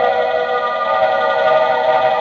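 Film score music: a loud, sustained chord of several high tones held steady, the kind of eerie cue laid under a silent supernatural scene in a 1950s horror film.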